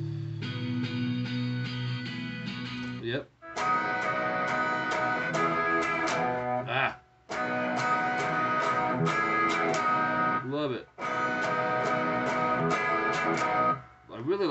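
Electric guitar strumming a ringing chord pattern, repeated in phrases about three and a half seconds long. Each phrase is split from the next by a brief break with a swooping pitch glide.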